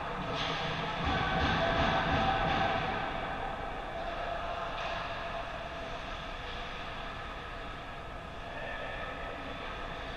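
Indoor ice rink ambience during a hockey game: a steady rumble and hum with skates on the ice and distant play. It is louder for a couple of seconds about a second in, then settles.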